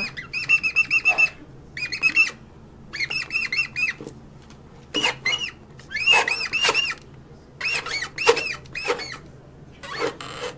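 Very high-pitched, squeaky laughter in about seven short bursts of quick up-and-down chirps, with gaps between bursts.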